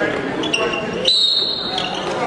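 Referee's whistle: one steady, shrill blast of about two-thirds of a second, starting about a second in, over the murmur of voices in a gym.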